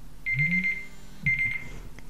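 Electronic countdown timer alarm going off in two short bursts of rapid, high-pitched beeps, signalling that the 30 seconds given are up.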